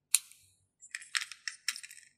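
A sharp metallic click, then a run of small irregular clicks and scrapes starting about a second in: a homemade soldering iron's tip tapping and scraping inside a small metal tin.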